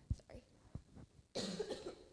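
A man coughing briefly and quietly in the first second, then saying "sorry".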